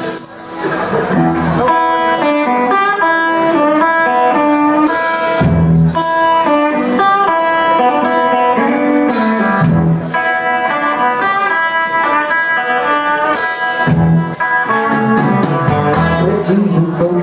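Live blues band playing the opening of a song: electric guitar over a drum kit, with saxophone, the full band coming in about a second and a half in.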